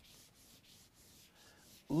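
Handheld whiteboard eraser rubbing across a whiteboard: a faint, dry hiss in quick back-and-forth strokes.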